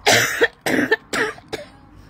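A woman coughing into her hand: a short run of coughs, the first the loudest, dying away after about a second and a half.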